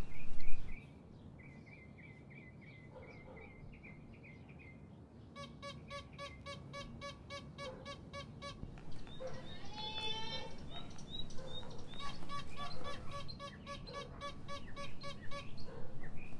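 Birds chirping and calling, among them a fast, evenly repeated note of about five a second in two stretches and a warbling phrase between them. A louder noise cuts off under a second in.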